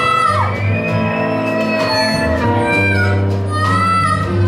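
Live band playing a slow ballad instrumental: a harmonica played close into a microphone carries the melody with sliding, bent notes, over acoustic guitar and low sustained bass notes.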